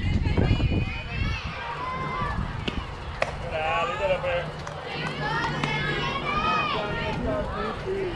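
High-pitched young girls' voices shouting and chanting softball cheers, with a couple of sharp clicks about three seconds in.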